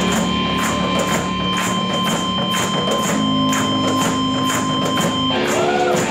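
A rock band with electric guitar, bass and drums playing an instrumental passage with no singing. The drums keep a steady beat of about four strokes a second under held guitar and bass chords, which change about three seconds in and again near the end.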